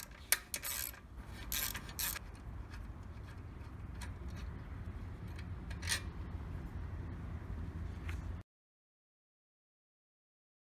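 A few light clicks and taps of small parts being handled by hand during motorcycle repair work, mostly in the first two seconds with one more near the middle, over a low steady background rumble. The sound cuts off suddenly about eight seconds in.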